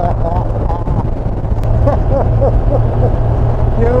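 Honda Crosstourer's V4 engine running steadily at motorway cruising speed, a constant low drone mixed with wind and road noise. Brief voices come through over it, with a laugh near the end.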